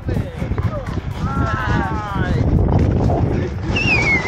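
Wind rushing over a camera microphone during a tandem parachute descent and landing, with a drawn-out call from a voice in the middle.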